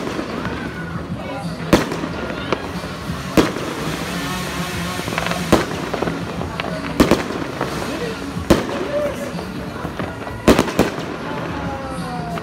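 Aerial fireworks exploding overhead: about seven sharp bangs, one every second or two, with two in quick succession near the end. Music and voices run underneath.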